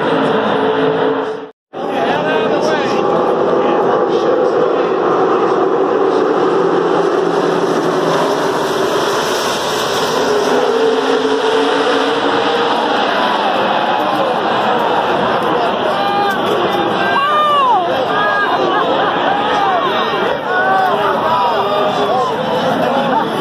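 A pack of NASCAR Cup stock cars running at full throttle past the grandstand, their V8 engines blending into one continuous drone. From about two-thirds of the way through, many crowd voices shout and yell over the engines.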